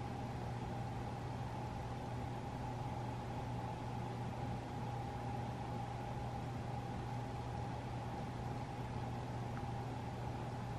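Steady low hum with a faint, unchanging whine above it: room tone with the air conditioning running.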